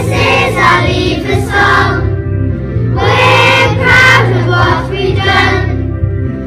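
A group of young children singing together in unison, in phrases of a couple of seconds, over a steady musical accompaniment.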